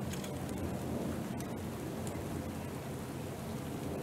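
Steady rain falling, a constant hiss with a low rumble underneath and a few faint sharp drop ticks.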